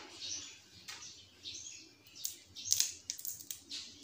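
Grilled shrimp being peeled by hand: the shell crackling and snapping off in a run of small sharp clicks. The clicks come mostly in the second half, with soft rustling before them.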